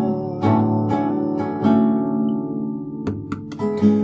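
Acoustic guitar strummed by hand, slow chords struck and left to ring and fade, with a few short string clicks shortly before a fresh strum near the end.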